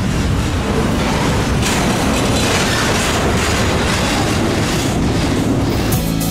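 Double-stack intermodal well cars rolling past close by: a loud, steady rumble and rattle of steel wheels on the rails.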